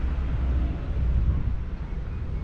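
Wind buffeting the camera microphone outdoors: a steady, uneven low rumble.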